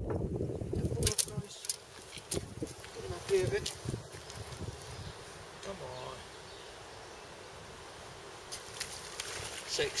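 Rustles and knocks of a rod and landing net being handled close to the microphone while a small pike is netted, with a couple of short vocal sounds, then a faint steady hiss.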